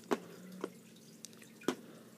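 A few faint, sharp clicks and taps, about three in two seconds, of hard plastic toy figures being handled and set down on a plastic tray.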